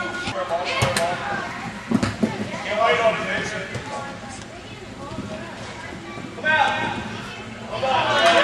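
Voices of players and onlookers calling out during an indoor futsal game, with a few sharp knocks of the ball being kicked about one and two seconds in.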